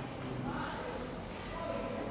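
Quiet, indistinct speech.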